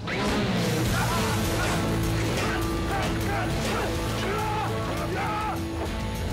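Film soundtrack music with steady, held low tones that come in suddenly and loud. Short curved vocal cries sound over it again and again.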